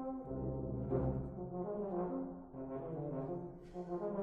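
Fanfare band (brass with saxophones) playing live: held brass chords over low bass notes, the harmony shifting about once a second.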